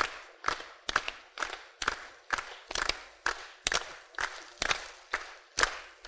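A group clapping hands in unison to a steady beat, a little over two claps a second, in a break between sung verses.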